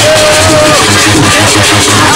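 Loud electronic dance music from a DJ set over a sound system, with a heavy bass pulse about four times a second.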